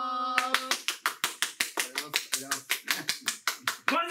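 Quick, even hand clapping, about seven claps a second, starting just under a second in, after a held vocal note that ends there.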